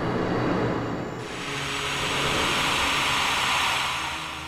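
A long rushing whoosh of blown air, like a gust of wind, over faint background music. It grows louder and brighter about a second in.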